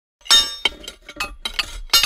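Cartoon sound effect of a boulder being smashed apart: a sudden loud crash about a quarter second in, then a quick run of sharp, glassy clinks and knocks as the pieces break and scatter.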